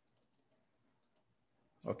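A few faint computer mouse clicks in the first half second, then a quick pair just after a second in, as text is selected for editing.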